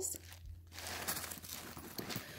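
Packing paper stuffed inside a plush mini backpack crinkling faintly as it is pressed and handled.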